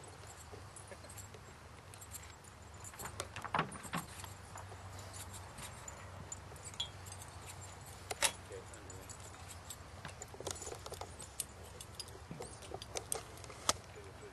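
Metal harness hardware on a chuckwagon team jingling and clinking in irregular bursts, with a few louder knocks about three and a half, eight and thirteen and a half seconds in, over a low steady hum.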